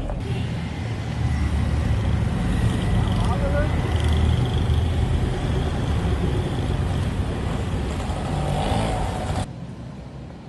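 Road traffic with vehicle engines rumbling close by and indistinct voices mixed in; the sound cuts off suddenly near the end.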